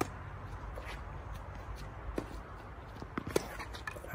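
Faint tennis rally: a few sharp racket-on-ball strikes and footsteps on the court over a low steady rumble.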